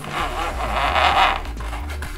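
Nylon zip tie being pulled tight through its locking head, a continuous zipping rasp of its ratchet teeth lasting about a second and a half, a "funny noise".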